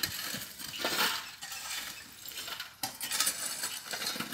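Clicks and knocks from a clear plastic jar and its screw-on plastic lid being handled, in several short, irregular clusters.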